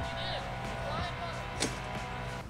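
Background music with sustained, held tones, under faint voices and a single light click about one and a half seconds in.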